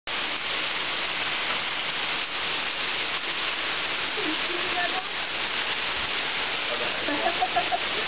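Heavy hailstorm pelting a lawn and porch, a dense, steady din with no let-up.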